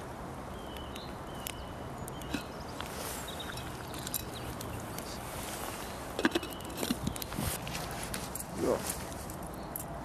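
A cooking pot on a wood fire, with a steady background hiss and a few light clinks and knocks past halfway as the pot's lid is handled.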